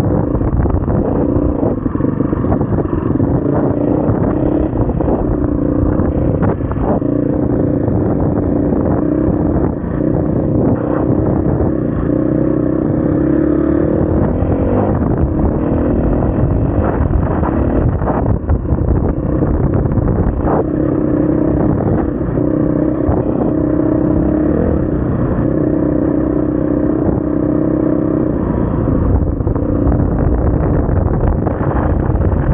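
SWM RS500R enduro motorcycle's single-cylinder four-stroke engine running under way, the note holding fairly steady and rising and falling slightly with the throttle. A few short knocks come through from riding over rough ground.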